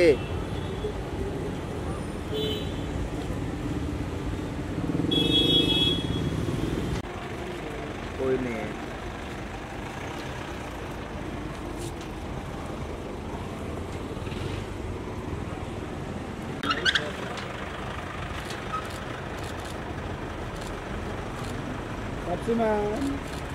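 Car engines running in street traffic, with a car horn sounding for about two seconds around five seconds in. Short shouting voices break in twice.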